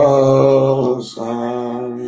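Worship music: a low male voice holding two long, chant-like sung notes on one pitch, with a brief break between them, the second note quieter.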